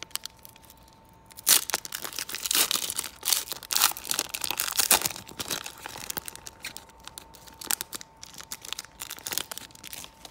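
Foil trading-card pack wrapper being torn open and crinkled in the hands, a dense crackling that starts about a second and a half in and thins to scattered crinkles and clicks as the cards are pulled out.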